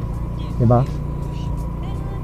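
Rusi Gala 125 scooter running at a steady pace while being ridden, a continuous low drone of engine and road noise with no change in speed.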